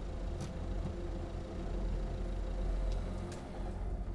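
A small van's engine running, with a steady low rumble and a few faint clicks.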